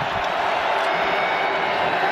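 Steady stadium crowd noise, an even wash of many voices from the stands with no single shout standing out.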